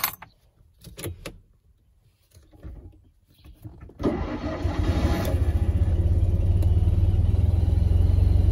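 A few clicks from the ignition key being turned, then about four seconds in the Polski Fiat 126p's 0.7-litre air-cooled two-cylinder engine starts as the starter pull tab is pulled, catching at once and running steadily.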